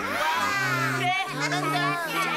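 Cartoon background music with a repeating bass line of held low notes, under the high voices of child-like cartoon characters calling out without clear words.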